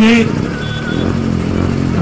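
A vehicle engine running with a steady low hum in a pause between a man's amplified speech, which breaks off just after the start.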